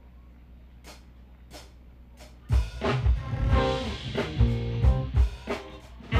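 Live smooth-jazz band starting a song: three sharp clicks at an even pace, then about halfway through the full band comes in loud with drum kit hits and bass.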